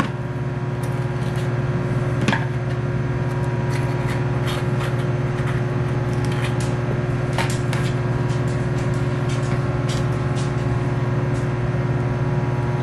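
A microwave oven running with a steady low hum, its fixed higher tones above it. Over it come short clicks and scrapes as a fork scoops avocado flesh out of the skin and taps against a plastic container.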